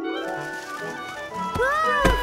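Cartoon background music with sustained melodic notes. Near the end, a short cry that rises and falls in pitch, then a loud thud as the character trips and falls to the ground.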